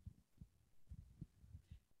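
Near silence with a few faint, low thumps, typical of a handheld microphone being handled as it is passed from one presenter to the next.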